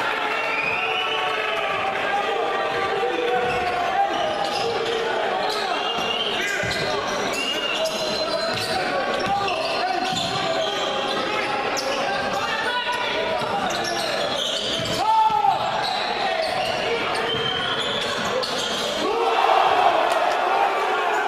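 Basketball game sound in a large gym hall: the ball bouncing on the hardwood court amid continuous voices from players and spectators.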